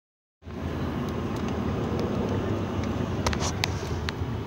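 Steady low rumble of road and engine noise heard inside a moving car's cabin, starting about half a second in, with a few sharp clicks near the end.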